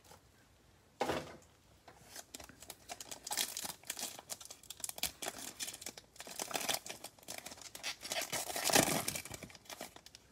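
Foil wrapper of a Panini Select basketball card pack being torn open and crinkled by hand. The crackly tearing and crinkling starts about a second in, carries on in uneven bursts, and is loudest near the end.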